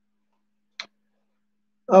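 Near silence, broken once by a single short click about a second in; a man's voice starts just before the end.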